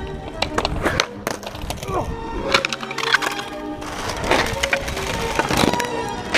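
Music with a voice in it, over sharp wooden clacks of a skateboard deck being popped and landing.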